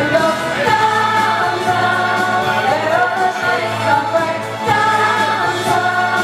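Two women singing a duet into handheld microphones over a karaoke backing track, with long held notes.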